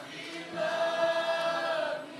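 Congregation singing together a cappella, holding one long note from about half a second in until near the end.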